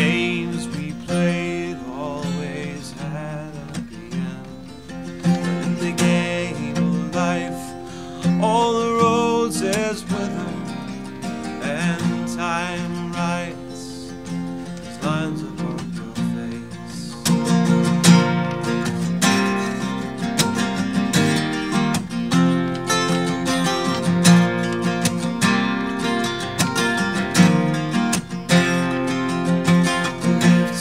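Live acoustic guitar music: strummed and picked acoustic guitar playing an instrumental passage, getting fuller and louder about seventeen seconds in.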